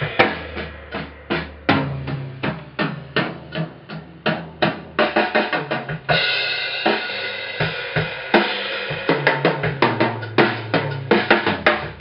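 Full drum kit playing a groove: kick drum, snare and toms with cymbals, the cymbals washing more densely from about halfway through. It is a drum recording made with a spaced pair of mics for a wide stereo spread, heard over the studio monitors.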